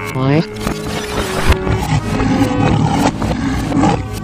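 A cow's moo trailing off in the first half second, then a lion's roar sound effect over light cartoon background music.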